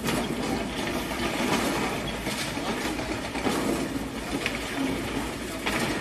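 Hydraulic excavators demolishing a concrete building: a steady engine rumble with irregular knocks and clatter of breaking concrete and falling debris.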